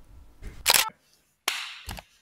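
Two short, sharp noise bursts about three-quarters of a second apart, the second with a brief fading tail: an edited sound effect laid over the animated intro card.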